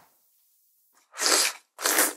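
Ramen noodles being slurped: two short, loud slurps starting about a second in, after a moment of silence.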